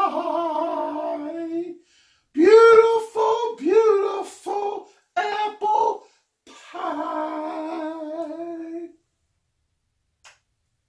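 A man singing loudly in drawn-out, wavering notes, in three phrases: a long held note, a run of shorter notes, then another long held note. It breaks off briefly about two seconds in and stops about a second before the end.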